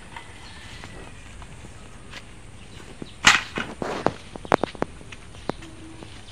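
Bean vines and dry garden leaves rustling and crackling. A loud rustle comes about three seconds in, then a run of sharp crackles and snaps.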